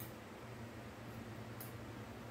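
Faint handling of a fabric pouch with a clear plastic panel, with one brief rustle about one and a half seconds in, over a steady low hum.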